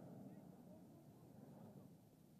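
Faint open-air field ambience with distant, indistinct voices of players and spectators.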